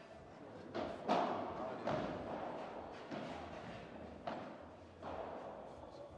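About half a dozen sharp knocks of padel balls being hit or bounced, spaced irregularly about a second apart, each trailing off in the echo of a large indoor hall.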